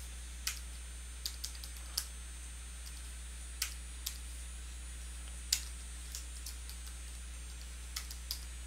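Computer keyboard being typed on: scattered, irregular keystrokes, about nine in all, over a faint, steady low hum.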